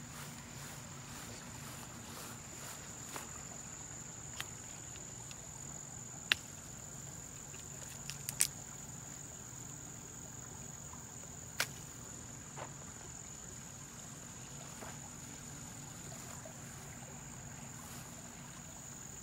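Insects trilling steadily on one high pitch, with a few sharp clicks or knocks, the loudest about six, eight and twelve seconds in.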